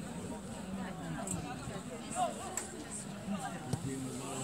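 Indistinct voices calling and shouting across a football pitch, with a few short sharp knocks, the last one near the end.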